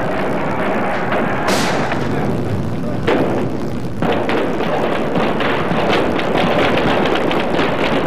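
Gunfire: a single sharp crack about a second and a half in, then from about four seconds in a rapid, irregular run of sharp cracks over a steady, noisy background.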